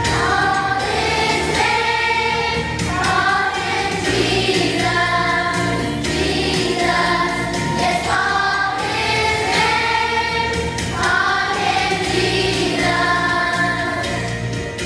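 Children's choir singing a song with instrumental accompaniment, the sung melody moving in phrases of a second or two over steady low notes.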